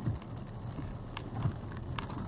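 Inside a car moving through rain: a steady hiss of rain and wet road under a low rumble, with a couple of light clicks in the second half.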